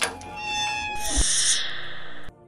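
A knock on a metal gate, then a high squeal from its hinges as it swings open, followed by a loud hiss that swells and cuts off suddenly.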